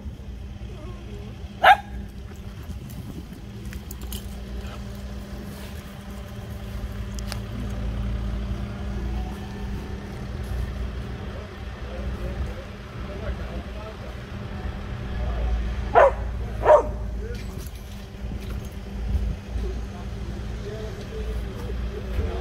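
Steady low drone of diesel construction machinery running at the canal works, with three short dog barks: one about two seconds in and two close together later on.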